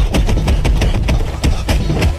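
Rapid series of punch and hit sound effects, about five or six a second, over a heavy, rumbling low soundtrack, as in a dubbed fight scene.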